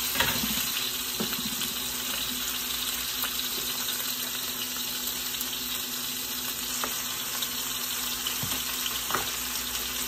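Food sizzling steadily in a hot pan, with a few light knocks of a utensil.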